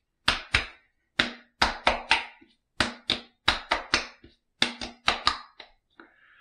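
Palms slapping bay rum aftershave onto a freshly shaved face: about sixteen sharp slaps in quick runs of two to four.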